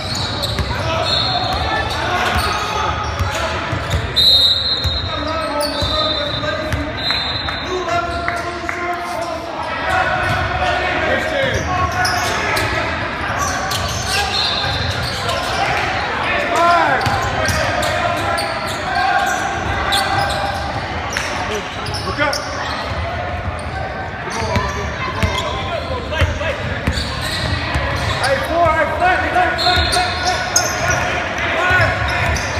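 A basketball being dribbled on a hardwood gym floor, mixed with the chatter of players and spectators echoing around a large gym. A few short, shrill high tones come in the first several seconds.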